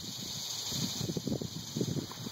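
Wind and handling noise on a handheld camera's microphone: irregular, muffled low rumbles and bumps over a steady high hiss.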